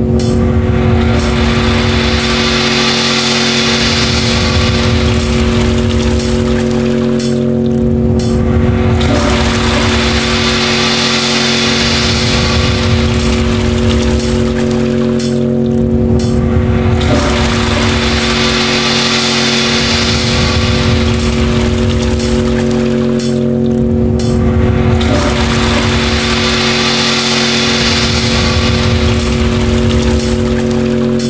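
Sample-based electroacoustic music: a steady, many-toned drone is held throughout while a hissing whoosh swells up and fades away about every eight seconds over a rumbling low pulse.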